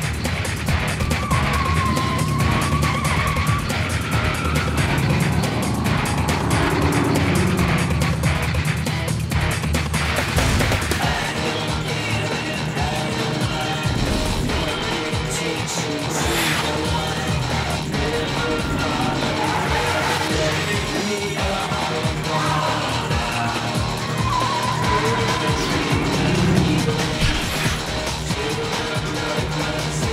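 Car engines revving and tyres squealing in a street chase, mixed under action background music. Tyres squeal a second or two in and again near the end.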